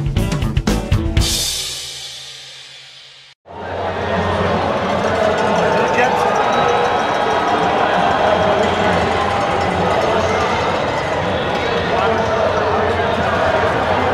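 Drum-beat music with a cymbal crash that rings out and fades, then a sudden cut to the steady hubbub of a large arena crowd, with many voices mixed together.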